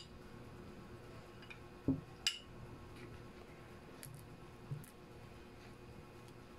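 A metal spoon knocking and clinking against a small glass bowl as butter is worked into a thick paste: a soft thump about two seconds in, a sharp clink right after it, and a few faint ticks later. Otherwise low room tone.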